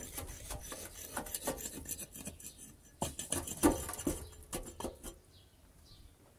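Metal tongs clinking and scraping against the tanoor's metal lid, in a run of irregular clicks and knocks that stops about five seconds in.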